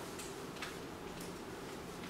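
Quiet classroom room tone: a faint steady hum with a few faint ticks.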